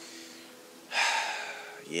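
A man's loud, breathy breath about a second in, lasting about a second and fading, over a faint steady hum.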